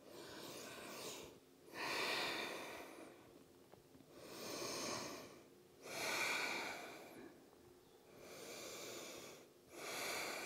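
A woman breathing slowly and deeply while holding a yoga forward fold. There are about six long, soft in- and out-breaths, each lasting a second or so with short pauses between.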